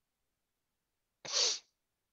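A single short sneeze a little over a second in, sudden and brief.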